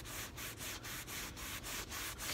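Baby wipe rubbed quickly back and forth over the white synthetic-leather seat bolster of a Tesla Model 3: a faint, soft scrubbing hiss at about five to six strokes a second, wiping off blue-jean dye transfer.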